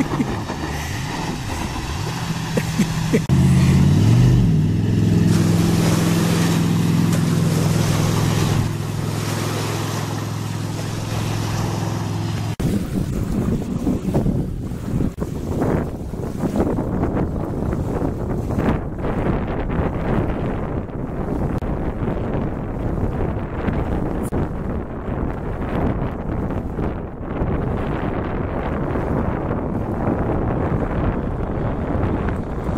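Jetboat with a Berkeley jet pump running at speed close by: a steady droning tone with a brief rise in pitch about three seconds in. It cuts off abruptly about twelve seconds in, leaving wind buffeting the microphone with the boat's engine fainter behind it.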